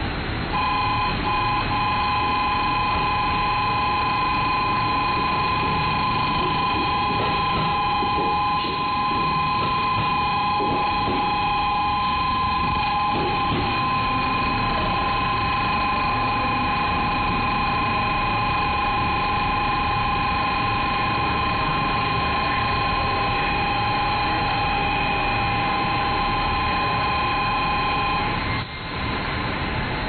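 A steady two-tone electronic platform signal sounds continuously and cuts off sharply near the end, over the low rumble of a JR Central 313 series electric train pulling into the platform.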